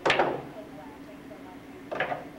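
Sharp crack of a pool shot: the cue tip strikes the cue ball and billiard balls clack together, ringing briefly. A smaller ball knock follows near the end.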